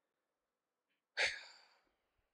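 A man's short breath into a close microphone about a second in, fading over half a second, in a pause between sentences.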